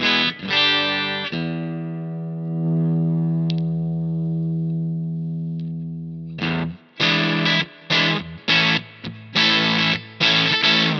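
Macmull T-style (Telecaster-type) electric guitar played through a Greer Amps Soma 63 vintage preamp pedal, switched on. Short choppy chords, then one chord left ringing for about five seconds, then choppy chord stabs again.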